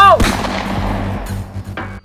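A single handgun shot, loud and sudden, just after a shout, its echo dying away over about a second.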